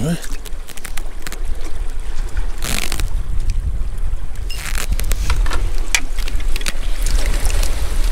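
Wind buffeting the camera microphone, a steady low rumble, with scattered light clicks and two short rushing bursts, one about two and a half seconds in and one about five seconds in.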